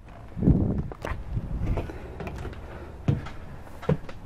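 Footsteps and a few knocks as someone climbs the entry steps into a travel trailer. A heavy step lands about half a second in, and lighter knocks follow about a second in and near the end.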